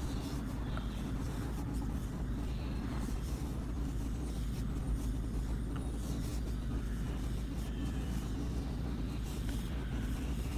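Steady low background rumble, even in level throughout, with a few faint small ticks.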